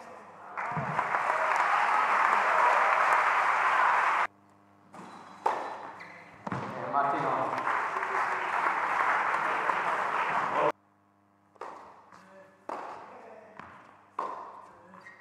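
Indoor tennis crowd cheering and clapping in two long bursts, each cut off suddenly, then a few sharp ball impacts near the end.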